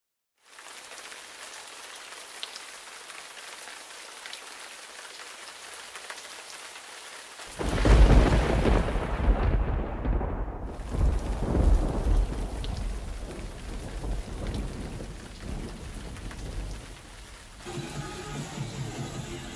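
Rain falling steadily, then a loud crack of thunder about seven and a half seconds in that rumbles on and slowly dies away.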